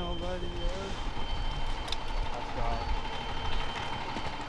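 School bus engine idling, a steady low rumble, with a thin steady high tone over it. Voices of a group of players are heard around it, one trailing off in the first second.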